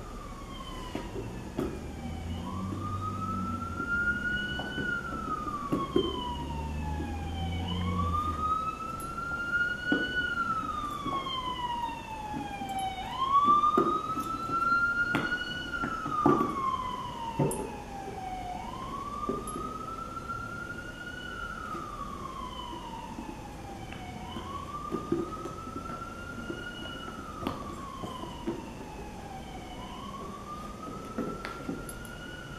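A siren wailing, its pitch sweeping up and then slowly down about every five and a half seconds. Scattered short knocks come from a plastic treat puzzle ball being pawed and rolled by a dog.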